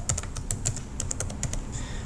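Typing on a computer keyboard: a quick, even run of key clicks, about six keystrokes a second.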